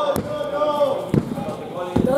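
Sharp thuds on a wrestling ring, three of them: one near the start, one about a second in and one near the end, under spectators shouting.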